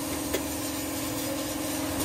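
A steady low mechanical hum, with one short click about a third of a second in as the broken plastic inner fender liner of a 2016 Dodge Dart is pulled back by hand.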